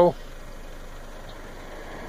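Faint, steady background noise of distant road traffic.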